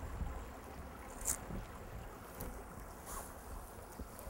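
Outdoor ambience of low wind rumble buffeting the microphone, with two brief high hisses, one about a second in and another around three seconds.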